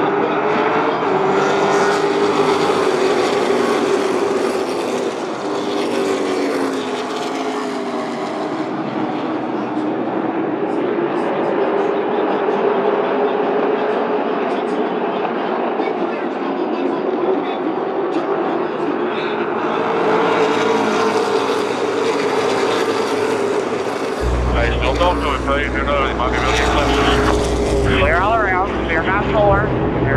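Outlaw Late Model race cars' V8 engines circling the asphalt oval, the engine sound swelling and fading as the cars come past and go around the far side. A deep rumble joins suddenly about two-thirds of the way through.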